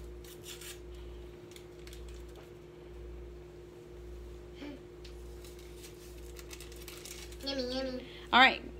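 Quiet room tone with a steady low hum and a few faint light clicks in the first second. A child's voice is heard briefly in the middle and again near the end.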